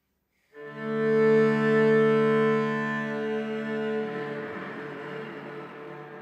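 Solo cello bowed on one long held note that starts about half a second in, swells, then slowly dies away.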